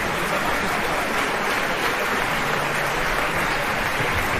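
Opera-house audience applauding steadily as the conductor takes his place in the pit at the start of the act.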